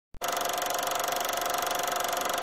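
Film projector running: a steady, fast mechanical clatter with a constant hum running through it, starting abruptly just after the opening silence.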